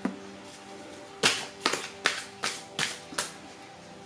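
Tarot cards being handled and set down on a table: a run of about seven sharp card snaps and taps, starting just past a second in, over soft background music.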